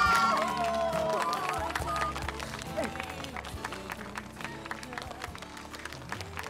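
Sung romantic pop ballad playing, with the vocal line fading about a second in, over scattered hand clapping.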